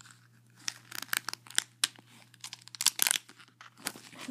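Duct-tape wallet and pouch being handled: a string of crackles and sharp crinkling ticks as the taped surfaces are pulled and pressed, bunched most thickly about three seconds in.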